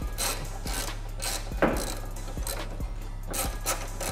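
Hands handling a heavy power cable and plastic zip ties: irregular rubbing and scraping, with a sharp click about a second and a half in, over a low steady hum.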